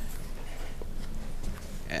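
A pause in a man's speech at a microphone: low, steady room noise in a public meeting hall, with one faint click about halfway through.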